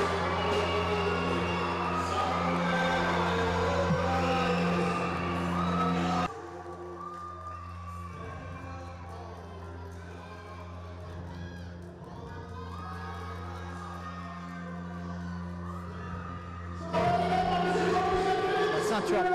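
Venue music playing with a crowd cheering and shouting over it. About six seconds in, the sound drops abruptly to a quieter stretch where the music continues, and near the end it jumps back up to full loudness.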